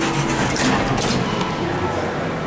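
Background crowd murmur with a steady low hum and a few light clicks.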